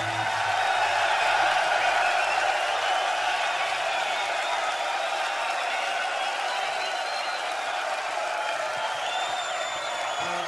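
A large rock-concert audience cheering and applauding between songs: a steady mass of clapping and shouting voices that slowly eases, with a few high whistles near the end.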